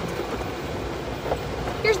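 Electric golf cart rolling along a gravel lane: a steady rumble of tyres on gravel and rattling from the cart's body.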